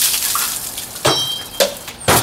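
Cola spraying and splashing out of a plastic soda bottle just sliced through by a machete, the hiss fading over about a second. Two sharp knocks follow.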